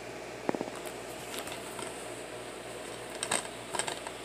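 Plastic DVD case handled and turned over in the hand, with a few light clicks and rubs over a steady background hiss.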